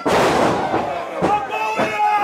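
Wrestler slammed down onto the ring canvas by a side suplex, a loud sudden impact with a few lighter thuds after it, under shouting voices.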